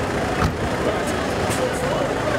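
Several people talking and calling out over each other in a tense crowd, over a steady low rumble, with a sharp knock about half a second in.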